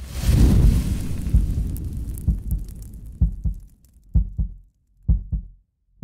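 Outro logo sound design: a deep hit with a long fading whoosh, then three pairs of short, deep thuds about a second apart.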